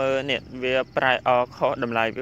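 A man's voice talking steadily in Khmer, with a faint, steady, high-pitched hiss underneath.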